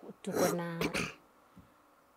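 A woman clears her throat with a short, rough cough, under a second long, shortly after the start.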